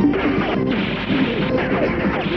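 Loud action film score mixed with crashing impact sound effects during a shootout.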